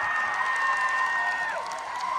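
Audience cheering and clapping, with several shrill held screams over the crowd; the highest one breaks off about one and a half seconds in.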